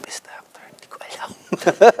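A man hesitates with soft, breathy sounds, then breaks into a chuckle about one and a half seconds in.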